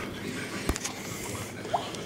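Quiet, steady room noise with a faint click about two-thirds of a second in and another small sound near the end, typical of a handheld camera and a silicone dish being handled.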